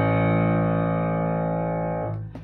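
Piano's closing chord in the low register, struck just before and held, fading slowly until the keys are released at the very end.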